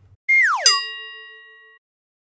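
A short electronic intro sound effect: a tone swoops quickly downward and ends in a bright chime that rings and fades out over about a second.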